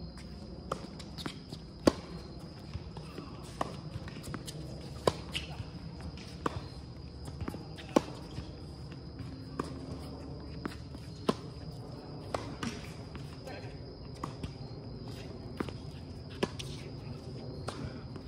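Tennis balls struck by rackets and bouncing on a hard court during doubles play: a string of sharp pops about every second, the loudest about two, five and eight seconds in, over a steady faint high-pitched whine.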